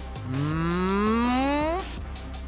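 A man's voice making one long rising "ooooh" that climbs steadily in pitch for about a second and a half, then cuts off.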